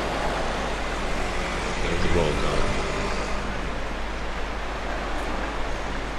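Steady road traffic noise from vehicles passing on a busy city street, with a brief voice about two seconds in.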